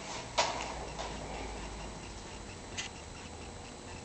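Steady low hum of room tone, with one sharp knock about half a second in and a fainter tick near the three-second mark.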